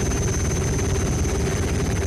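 Helicopter rotor noise, a fast, steady chopping with a steady hum over it.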